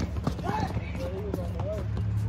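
Outdoor pickup basketball game: a few irregular thuds of a basketball bouncing and sneakers on the court, with players calling out to each other over a steady low hum.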